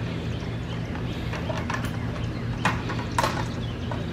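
A few light knocks and taps, scattered unevenly, over a steady low hum.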